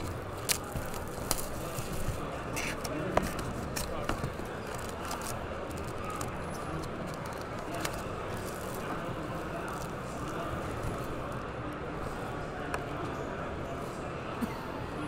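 Cardboard trading-card box being opened and its foil-wrapped packs handled: scattered clicks and crinkles over the steady chatter of a crowded hall.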